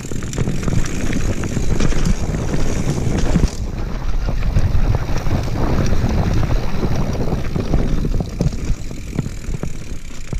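Wind buffeting the microphone over mountain bike tyres rumbling on a dirt trail, with frequent clicks and rattles from the bike over bumps. The noise eases a little near the end.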